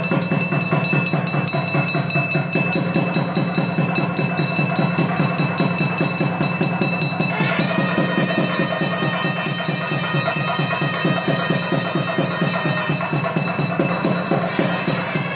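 Temple drums beating fast and steadily with bells ringing over them, the accompaniment to the aarti. About halfway through, a brighter ringing of several bell tones joins in.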